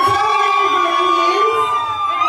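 A woman singing into a handheld microphone, holding one long high note that rises very slightly.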